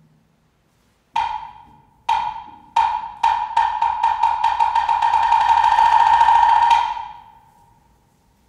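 Wood block struck on a single pitch after a pause: slow separate strokes just over a second in speed up into a fast, even roll. The roll holds for a few seconds, then stops and dies away, with no marimba playing.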